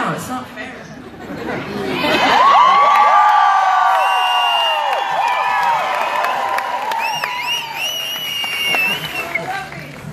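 Concert crowd cheering and screaming. It swells about two seconds in, and high-pitched shrieks stand out near the end.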